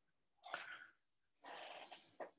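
Two faint, short breaths from a man pausing while talking, one about half a second in and a longer one near the end.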